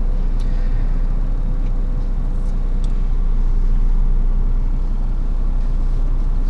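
Steady low rumble with a thin, steady hum above it, and a couple of faint ticks about two and a half seconds in.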